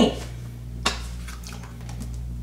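Honey being added to a smoothie in a blender jar: a single sharp click about a second in, then a few faint taps, over a steady low hum.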